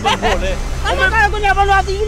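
Speech: people talking loudly, voices overlapping, over a steady low hum.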